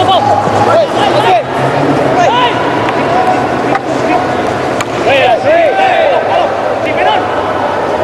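Field-level sound of a field hockey match in play: players' short shouts and calls come again and again over a steady stadium hum. Two sharp clacks about four and five seconds in are the sound of a hockey stick striking the ball.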